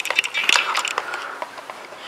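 Small plastic clicks and knocks from handling the mount's hand controller, with a sharper click about half a second in.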